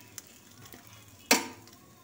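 Egg-coated bread frying in oil in a flat pan with a faint sizzle, and one sharp scrape of a steel spatula against the pan about a second and a half in as it is pushed under a slice to turn it.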